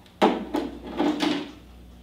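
A run of four or five knocks and scrapes from an object being handled on a hard surface, lasting about a second. The first is the loudest and comes suddenly.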